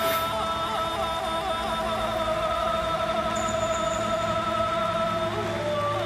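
A male singer holds one long, steady high note over backing music, then moves to a new pitch near the end.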